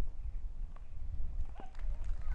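Two dull taps of a tennis ball bounced on a grass court before a serve, about a second apart, over a steady low rumble.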